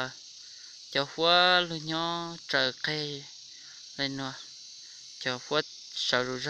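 Steady, high-pitched insect chorus, with a person speaking in short phrases over it; the voice is the loudest sound.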